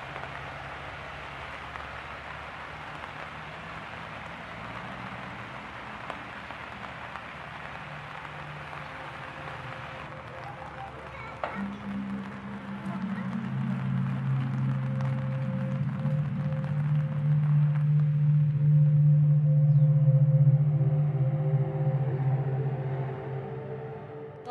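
Steady rain hiss for about the first half, then background music of long held low notes comes in, swells, and eases off near the end.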